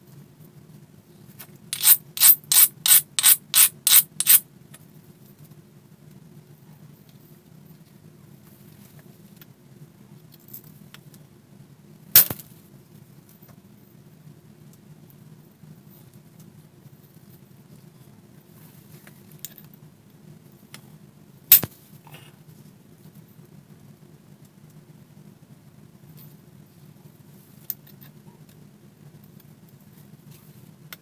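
Keokuk chert preform being worked for pressure flaking: about nine quick rasping strokes near the start, typical of abrading the edge, then two sharp clicks some ten seconds apart as flakes snap off the chert. A low steady hum runs underneath.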